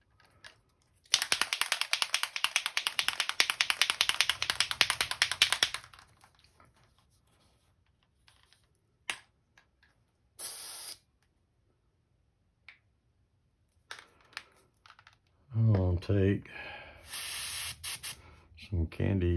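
A bottle of airbrush paint shaken quickly for about five seconds, rattling in rapid clicks. Later come two short hisses of an airbrush spraying, the second near the end as the paint is test-sprayed onto a paper towel.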